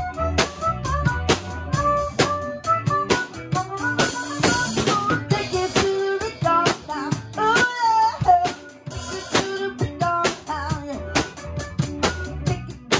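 A band playing live in a rehearsal room: drum kit, bass and electric guitar under a bending lead melody line.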